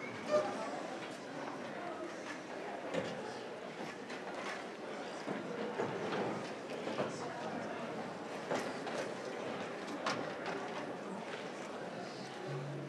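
Indistinct murmur of audience voices in a hall, with shuffling, footsteps and a few scattered knocks as band members move and settle on stage.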